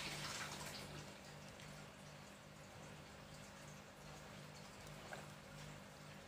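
Near silence: faint room tone with a low steady hum, a brief rustle at the start as the test leads and wires are handled, and a soft click about five seconds in.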